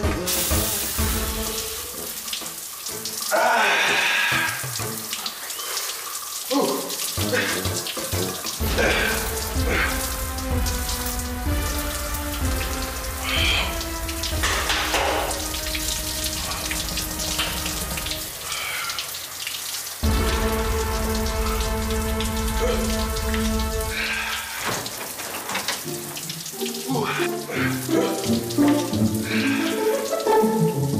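Shower water spraying steadily in a tiled shower stall, with music playing over it.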